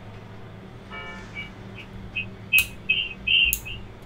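A run of short, high-pitched pips, several a second, with a couple of sharp clicks among them.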